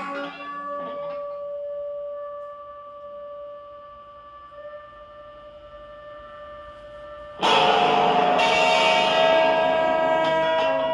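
Saxophone music: a soft, long-held note that slowly fades, then loud playing comes back in suddenly about seven and a half seconds in.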